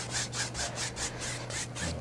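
A two-inch brush scrubbed back and forth across a canvas wet with liquid white. The bristles make a rhythmic brushing, about four strokes a second, over a low steady hum.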